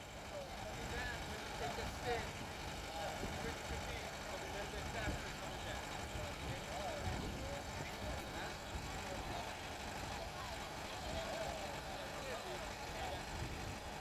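John Deere compact utility tractor's diesel engine running steadily at low revs, with faint voices in the background.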